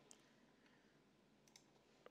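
Near silence with a few faint computer-mouse clicks: one near the start and a couple more about a second and a half in.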